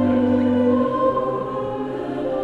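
Choral sacred music with long held chords; the lowest notes drop away a little under a second in and the chord shifts.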